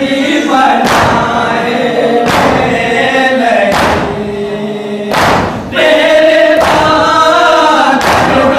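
Group of men chanting a noha, a Shia lament, in unison led by a reciter on a microphone. Thuds of chest-beating matam fall in time, about every second and a half.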